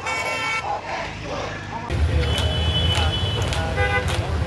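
Vehicle horns tooting in street traffic over crowd voices: a short honk right at the start and another just before the end. About two seconds in, a louder low rumble sets in abruptly.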